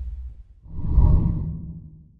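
Whoosh sound effect of a TV channel's logo ident. One sweep fades out, then a second low, rumbling whoosh swells about halfway through, peaks around a second in and dies away.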